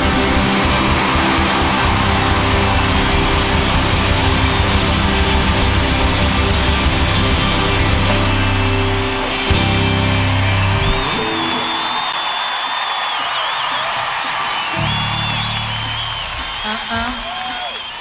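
Live pop-rock band playing with full drums and bass, which stop about eleven seconds in. After that a concert crowd cheers, with scattered clapping near the end.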